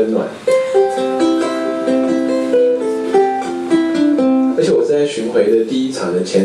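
Ukulele played alone: a short melodic phrase of single plucked notes that ring on and overlap, starting about half a second in and stopping after about four seconds.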